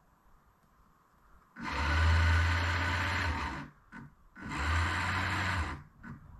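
Autopilot's electric drive motor running in two bursts: one of about two seconds starting about a second and a half in, then a shorter one near the end, each a steady low drone with a whirring hiss above it.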